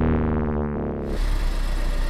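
A sustained synthesizer-like tone that ends about a second in, followed by a car engine idling with a steady low hum.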